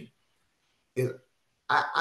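Speech only: a man's voice saying one short word about a second in, with dead silence around it and his speech picking up again near the end.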